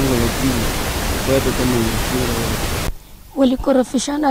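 Low, quiet speech under a loud, steady hiss on the recording; the hiss cuts off abruptly about three seconds in, and a woman then speaks on a clean recording.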